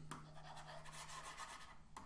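Faint scratchy rubbing of a stylus scrubbing back and forth on a drawing tablet while writing is erased.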